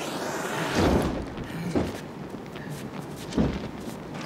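A trail of fuel on a concrete floor catching fire and burning with a rushing roar. Three deep thumps land about one, two and three and a half seconds in.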